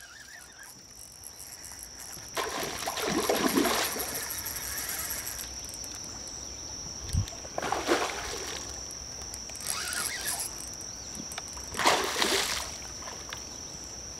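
A hooked fish splashing and thrashing at the water's surface in several short bursts while being fought on rod and line, with one dull knock about seven seconds in. A steady high cricket trill runs underneath throughout.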